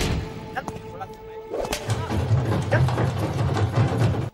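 Tamil film background score with a heavy bass beat: the dense mix thins to a sparser passage with a voice, then the deep low beat comes back about two seconds in.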